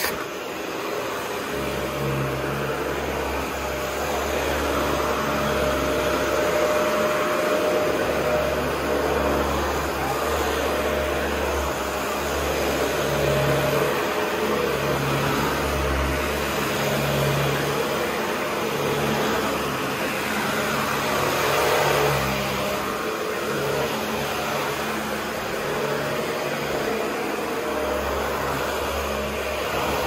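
Dyson Ball Total Clean (DC55) upright vacuum cleaner running continuously as it is pushed back and forth over carpet. Its drone swells and eases a little with the strokes.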